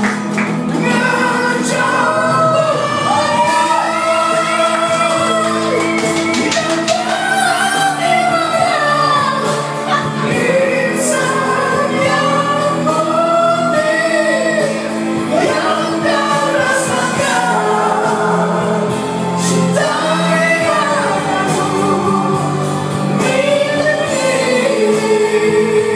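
A man singing a Malay song into a corded karaoke microphone over recorded backing music, in long held notes.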